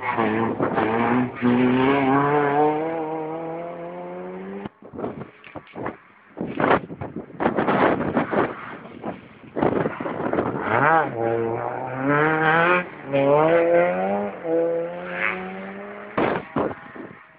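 Rally car engines at full throttle: the first car accelerates away, its engine note rising and dropping at gear changes and fading over the first few seconds; after a lull, a second car approaches from about ten seconds in, its engine rising through several upshifts as it passes and then fades.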